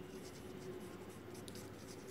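Faint scratching of a pencil writing by hand on notebook paper, a word being written in short strokes.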